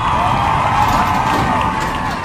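Sectional garage door being lifted open by hand, its rollers rumbling along the metal tracks with shifting high squeals.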